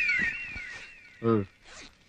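A film's comic whistle motif, a series of rising-and-falling whistled tones, fading out, followed a little after a second in by a brief vocal grunt from a man.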